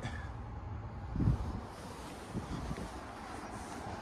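Wind rumbling over a handheld phone microphone outdoors, a steady low noise with a brief louder low bump about a second in.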